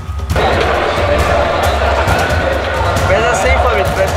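Background music with a steady deep bass beat, joined about a third of a second in by the chatter of many voices in a crowd, with no single clear speaker.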